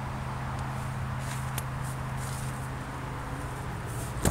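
A steady low hum runs under faint rustling of tomato leaves brushing the handheld camera, with a couple of light clicks.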